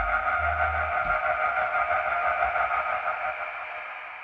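Closing bars of a song: a held keyboard chord fading out, with a low bass note dying away about a second in.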